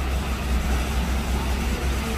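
A steady, low mechanical rumble, like building machinery or ventilation, running evenly without change.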